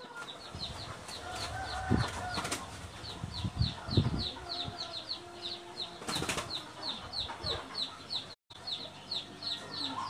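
A bird chirping in a fast, even series of short, high, falling notes, about three a second, with a few scattered knocks and clatters.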